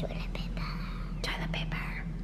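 A child whispering softly, breathy and unvoiced, over a low steady hum.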